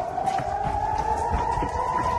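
Air raid siren wailing, one long tone slowly rising in pitch: a civil-defence warning of an incoming rocket attack.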